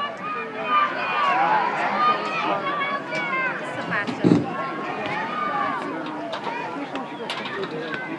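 Spectators shouting and cheering the runners on as an 800 m race gets under way, many voices overlapping. A brief low thump about four seconds in.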